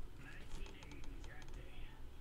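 Trading cards being handled and flicked against one another on a table: a quick series of light clicks and taps.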